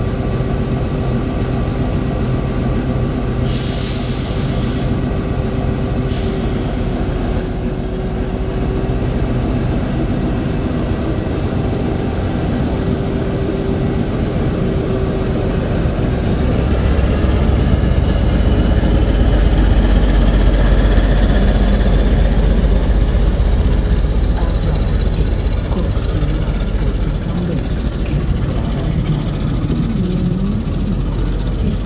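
CP class 1400 diesel locomotive running slowly past with its train, its engine's deep rumble growing loudest as it passes close, with a faint rising whine as it gathers speed. A short hiss of air comes a few seconds in.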